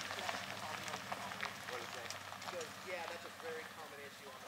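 Ford F-250 Super Duty diesel pickup driving away, its engine hum fading steadily, with faint voices in the background.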